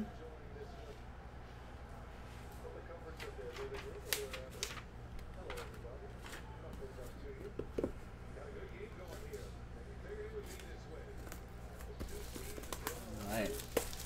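Scattered light clicks and rustles as a cardboard trading-card box is handled, then plastic shrink wrap crinkling and tearing as it is pulled off the box near the end, over a low steady hum.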